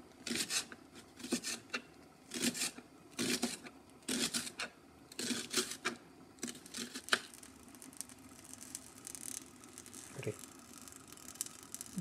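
Kitchen knife chopping a shallot on a plastic cutting board: a run of separate cuts, each blade tapping the board, unevenly spaced at about one or two a second, dying away after about seven seconds, with one more knock near the end.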